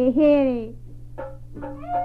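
Taiwanese opera (gezaixi) singing: a voice holds a long note that slides down in pitch and ends under a second in. The string accompaniment then starts picking out separate notes. A steady low hum from the old recording runs underneath.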